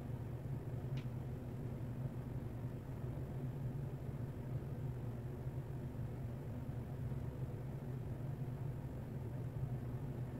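Steady low hum and hiss of room background noise, with one brief faint click about a second in.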